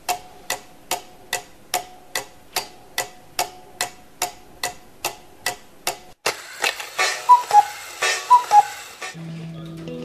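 Ticking-clock sound effect, sharp even ticks about two and a half a second. About six seconds in, the ticks give way to a louder, dense rattling burst with a few short chirps, which cuts off suddenly about nine seconds in.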